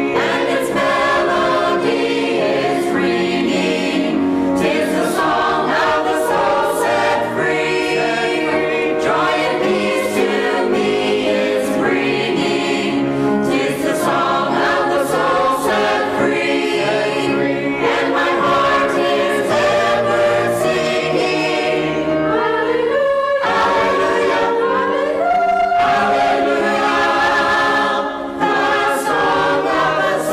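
Mixed church choir of men's and women's voices singing in parts, with a short break between phrases about three-quarters of the way through.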